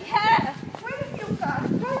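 People talking in an argument, their words not clearly caught, with faint footsteps underneath.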